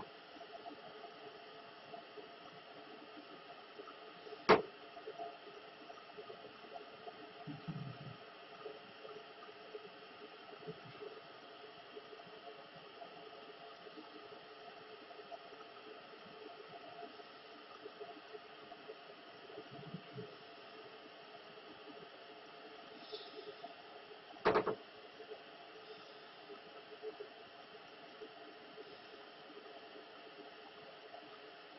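Steady faint hiss of background noise, broken by two sharp clicks, one about four seconds in and one about 25 seconds in, with a couple of faint low thumps between them.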